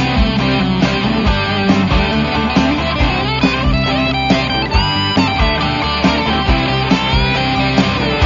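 Rock music with electric guitar over a steady beat. The guitar plays a few sliding notes around the middle.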